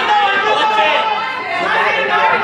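Several voices talking and calling out at once, overlapping crowd chatter.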